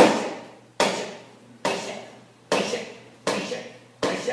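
Digging sound effect in a puppet show: a shovel striking earth five times, one strike a little under every second, each with a sharp start and a fading tail.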